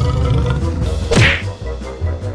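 A cartoon whack sound effect about a second in, with a quick falling pitch, over steady background music.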